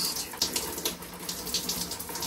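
Hot water running and splattering over a hand held under the stream to test its temperature.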